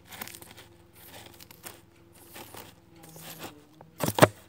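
Soft, irregular rustling strokes of a hairbrush dragged through a doll's long synthetic hair, close to the microphone, about one or two strokes a second. A faint steady hum sits underneath.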